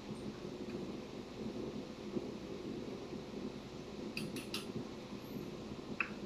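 Faint handling of a plastic water bottle and a small measuring cup on a table while mixing disinfectant solution, with a quick run of about three sharp clicks about four seconds in, over a steady room hum.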